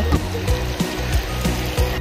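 River water rushing over rocks through a shallow, fast riffle, with music underneath.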